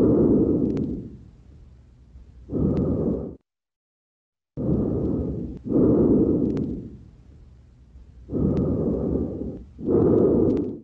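Lung sounds heard through a stethoscope on the back: repeated soft rushes of breath noise, in and out, with a second of silence about three and a half seconds in. These are vesicular breath sounds of a lung recently drained for a pneumothorax, which the examiner judges symmetric between the two sides.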